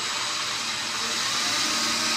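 Titan TM20LV mini mill's spindle running up to speed on its belt drive: a steady whir with a thin high whine, growing a little louder as the spindle climbs to about 1,500 rpm.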